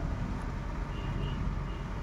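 Steady outdoor background noise with a low rumble, and a faint short high tone about a second in.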